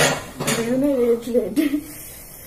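A brief clatter at the start, then a person's voice making a drawn-out, wordless sound for about a second.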